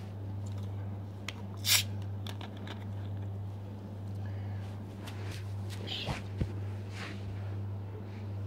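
Plastic soft-drink bottle of Mountain Dew being handled and drunk from: a short burst of noise just under two seconds in, then small clicks and a couple of soft knocks about six seconds in, over a steady low hum.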